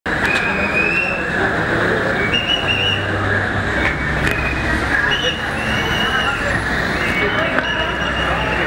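Busy crowd babble with indistinct voices calling out, a steady noisy background, short high whistle-like tones recurring throughout, and a few sharp clicks.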